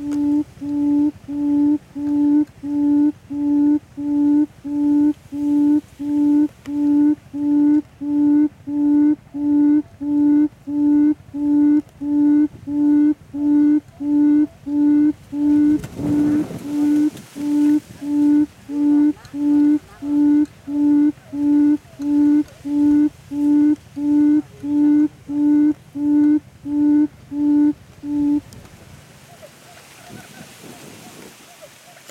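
Buttonquail booming call: a low, even hoot repeated about three times every two seconds, stopping a couple of seconds before the end. A brief burst of noise cuts across it about halfway through.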